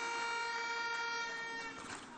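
A horn blown in the crowd, holding one steady, buzzy note that fades out just before the end.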